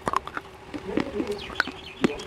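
Dry slate pencil and clay being chewed right at a clip-on microphone: a run of sharp, crackly crunches, several a second.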